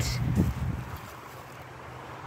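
Low, steady background rumble that dies down about half a second in, leaving a faint hiss.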